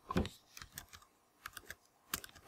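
A few light, scattered clicks and taps of a pen stylus on a drawing tablet, the most distinct one just after the start.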